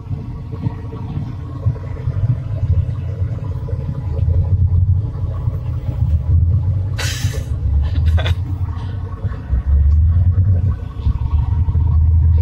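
Low rumble from a car driving simulator as it is driven, swelling louder several times. Two short sharp noises come about two-thirds of the way through.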